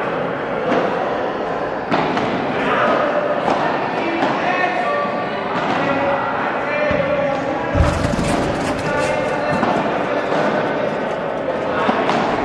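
A padel rally on an indoor court: the ball being struck by rackets and bouncing off the court and walls, heard as scattered sharp knocks and thuds over background talking. About eight seconds in there is a heavy thud, followed by a quick run of sharp clicks.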